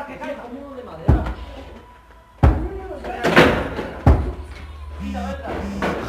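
Three loud crashes about a second, two and a half and four seconds in, each with a short ringing tail: stones and debris being thrown and smashing.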